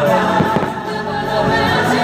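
Choral music from the fireworks show's soundtrack, with held sung notes, and a few firework bangs among it.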